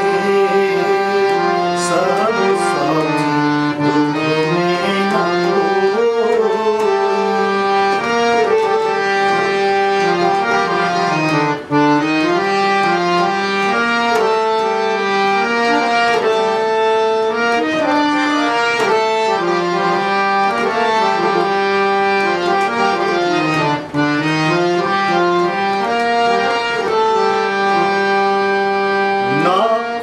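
Harmonium playing a bhajan melody on its own, notes stepping up and down and held between steps, with two very brief breaks, about twelve seconds in and about six seconds before the end.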